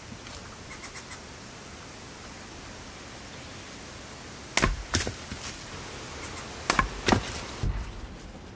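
Splitting maul striking a length of firewood set on a stump chopping block: two pairs of sharp wooden cracks, about halfway through and again near the end, with a duller thud just after the second pair.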